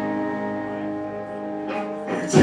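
A live rock band holds a ringing chord on electric guitars that slowly fades. There is a sharp hit near the end.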